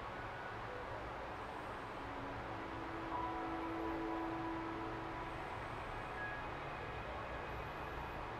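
Low, steady background hum and hiss with a few faint held tones, one lasting about three seconds in the middle; no speech.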